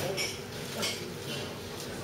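Low steady room noise in a pub, with two brief hissy sounds about a quarter of a second and just under a second in.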